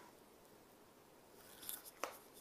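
Near silence: quiet room tone, with a faint short noise near the end.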